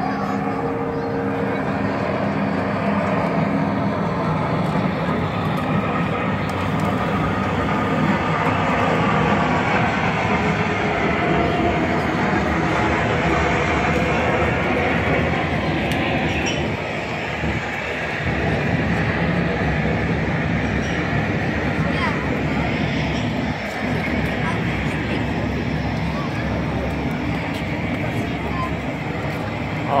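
A large wheeled street-theatre machine moving through a crowd, a steady mechanical rumble, with crowd chatter underneath.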